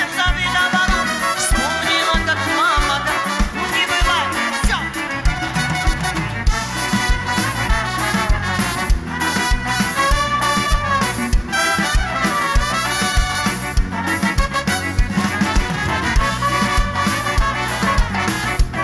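Live pop band with a brass section of trumpets and saxophones playing an instrumental passage over a steady drum beat, with a Latin or swing feel.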